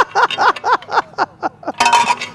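A man laughing in a run of short, quick bursts, about four a second, with a louder burst near the end.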